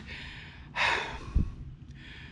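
A man's long audible sigh about a second in, followed by a brief low thump.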